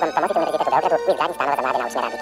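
Television commercial soundtrack played back at high speed: voices and music come out as rapid, high-pitched, garbled warbling, with a brief break about a second in.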